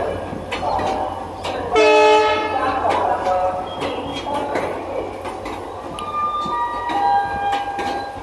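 Express train coaches rolling past at close range, the wheels clattering over rail joints in a steady run of clicks. A loud train horn blast sounds about two seconds in, lasting under a second.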